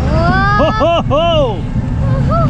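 A high-pitched voice laughing or whooping in quick rising-and-falling swoops over the steady low rumble of a roller coaster train climbing its chain lift hill.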